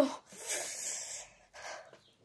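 A girl's long hissing breath, then a shorter breath about a second and a half in: a reaction to the cold of freezer-chilled gel eye pads pressed on her eyes.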